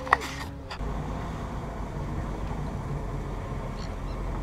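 Fishing boat's engine running steadily, a low rumble mixed with water and wind noise. A few brief clicks and a short sharp sound come in the first second.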